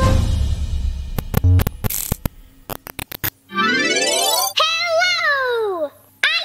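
Cartoon-style robot power-up sound effects as a battery brings the robot to life: a run of sharp mechanical clicks and ratcheting, then a rising electronic sweep, then warbling electronic tones that fall in pitch.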